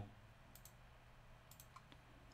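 Near silence, with two faint clicks from a computer being operated, about half a second in and again about a second and a half in.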